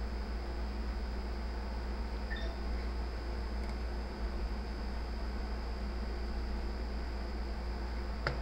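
Steady background hum and hiss from the recording, with no distinct sound events.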